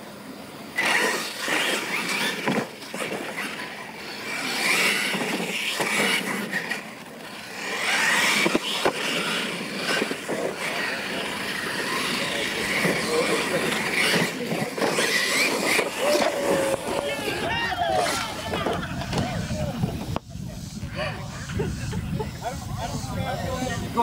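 Radio-controlled Losi LMT monster trucks racing on a dirt track, their brushless electric motors whining as the pitch rises and falls with the throttle, over the sound of tyres on dirt.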